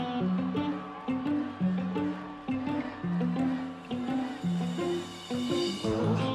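Live band playing a song intro led by plucked strings: a bouncing run of short low notes, several a second.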